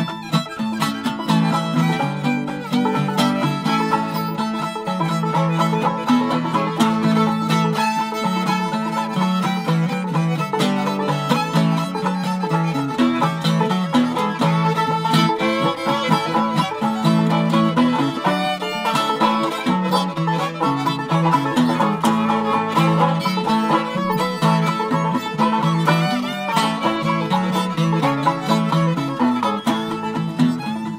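Old-time string band playing an instrumental passage with no singing: banjo, fiddle and guitar together, keeping a steady rhythm.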